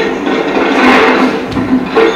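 Music from an old black-and-white film's soundtrack, played over loudspeakers in a room, with busy, noisy sound effects under it.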